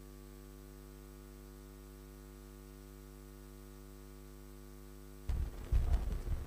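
Steady electrical mains hum with a buzzy stack of overtones in the hall's sound system. About five seconds in it cuts off suddenly, and louder low thumps and rustling follow near the end.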